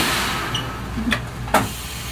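Compressed air hissing briefly from the stopped electric commuter train, fading within about half a second, then two mechanical clunks about a second and a second and a half in, the second one louder.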